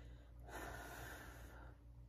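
A woman on the verge of tears draws one loud breath in, lasting about a second, starting about half a second in.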